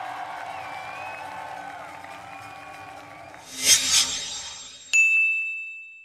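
Crowd noise, then two quick whooshes about three and a half seconds in, followed by a single bright electronic chime that rings out and slowly fades as the closing logo appears.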